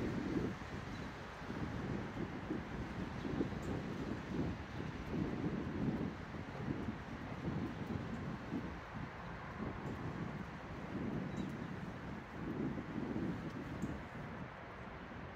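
Wind buffeting the microphone: a low, gusty noise that swells and fades irregularly.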